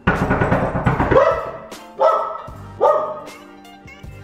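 A dog barking several times, short separate barks about a second apart, over background music.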